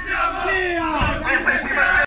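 Several people shouting and yelling over one another in a mock riot-control confrontation, with one long, falling shout about half a second in.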